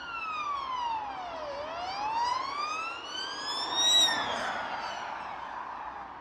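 Emergency-vehicle siren played as an example of the Doppler effect. Its wail sweeps down in pitch and back up, is loudest about four seconds in, then falls away and fades.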